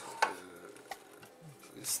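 Handling of a CB radio's open metal chassis: a sharp knock about a quarter second in, then faint rubbing and small ticks as hands move over the set.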